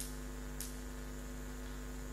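Steady electrical mains hum from the microphone and sound system, a few low steady tones at a modest level. Two faint ticks, one at the start and one about half a second in.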